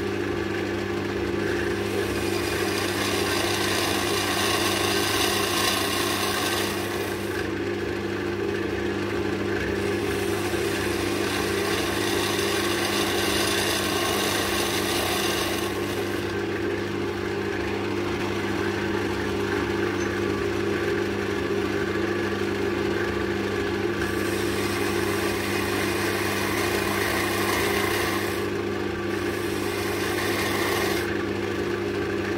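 Wood lathe motor humming steadily while a spindle gouge cuts the spinning oak handle blank. The hissing cutting noise comes in passes several seconds long, with short pauses between them where only the motor hum remains.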